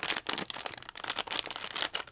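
Crinkling of a thin clear plastic wrapper around a roll of washi tape as it is handled: a dense, irregular run of small crackles.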